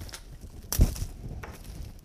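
A single sharp knock about three-quarters of a second in, as a foliage stem is set down into a vase, over faint handling noise.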